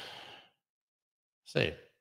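A man's breathy sigh that fades out about half a second in, followed by silence.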